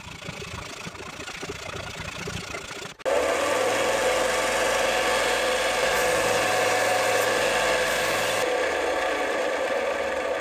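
Quieter hand sawing of wood for about three seconds, then an electric bench belt sander cuts in loudly and runs steadily with a steady hum, grinding a small thin piece of wood; the grinding hiss eases off near the end while the motor keeps running.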